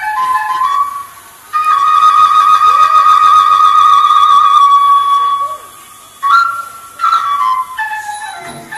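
Traditional Thai dance music led by a flute-like wind instrument: a short run of notes, then one long wavering held note for about four seconds, then a few more notes near the end.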